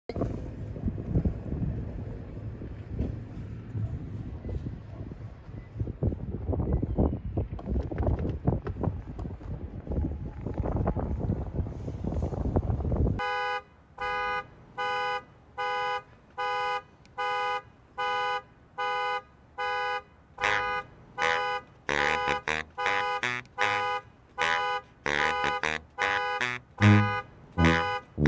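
Wind rumbling on the microphone for about the first thirteen seconds. Then an Audi saloon's car alarm goes off, its horn honking on and off in an even rhythm of about one and a half honks a second. From about twenty seconds in the pattern grows busier, with low brass notes joining near the end.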